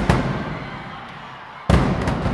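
Marching drumline of snare, tenor and bass drums with crash cymbals playing loud unison hits: one right at the start that echoes away, then a louder one near the end.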